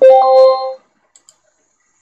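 A loud, short chime: a few quick struck notes, then one held tone that stops after under a second. Two faint clicks follow.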